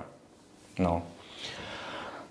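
A man's speech pausing: near quiet, then one short spoken syllable about a second in, followed by a faint breath.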